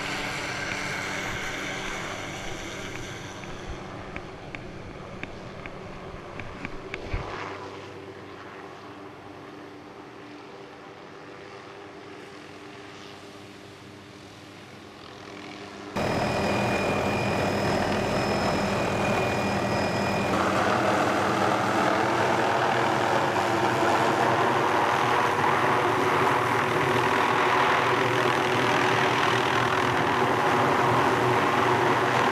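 Helicopter flying off with a slung load, its engine and rotor sound fading steadily over the first half. About halfway it cuts to loud, steady helicopter noise heard from on board.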